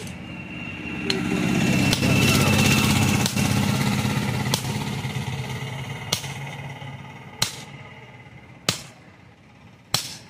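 Sledgehammer blows ringing on an axe head held in tongs on an anvil, a sharp strike about every second and a quarter. Under them a motor vehicle engine swells up and fades away over several seconds.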